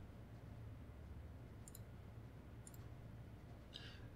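A few faint computer mouse clicks over quiet room tone with a steady low hum.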